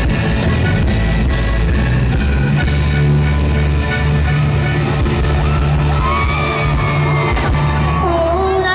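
Loud live band music with heavy bass and drums, an accordion playing at the front. A voice comes in with sliding notes about six seconds in.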